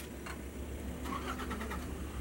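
Car engine running at low revs with a steady low rumble as the vehicle creeps along, with a few light clicks and rattles in the second half.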